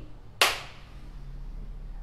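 A single sharp clap about half a second in, with a short decaying ring.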